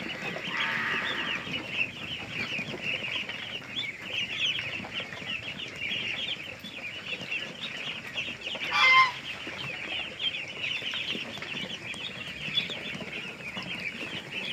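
A large flock of week-old domestic ducklings peeping nonstop in a dense, high-pitched chorus, with one louder call about nine seconds in.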